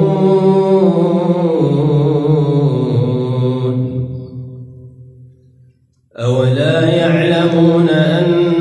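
A man reciting the Quran in melodic tajweed style: the last word of a verse is drawn out in one long, ornamented held note that steps down in pitch and fades out about five seconds in. After a short pause near six seconds, the next verse begins.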